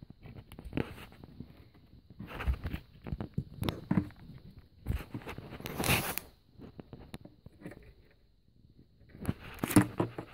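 Close, irregular plastic clicks, scrapes and rustles as fingers work the locking clip of a rear parking-assist sensor's wiring connector to pull it off the cable. The loudest scrape comes about six seconds in.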